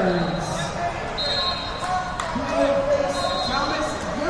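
Indistinct talking of several people, echoing in a large gym hall, with scattered thuds and two short, high, steady tones.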